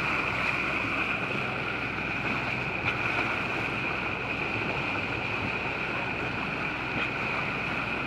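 Steady rushing noise of water along a sailboat's bow as it moves through calm sea, with wind on the microphone and a brief tick about three seconds in.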